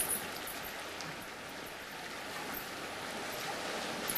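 Steady wash of sea surf on a shore, a soft and even rushing bed of noise.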